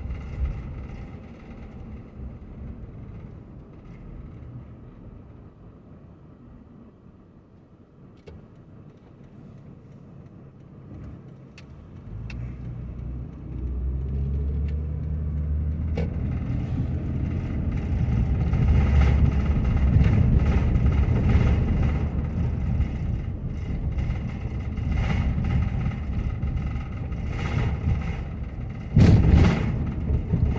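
Car engine and road noise heard from inside the cabin: quiet and low at first, then louder from about 12 seconds in as the car accelerates and drives on.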